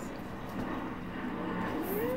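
Indistinct background voices over steady room noise, with a voice starting up near the end.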